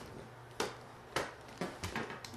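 A few short clicks and knocks, four in about two seconds, from lowering a telescoping light stand and handling its section locks.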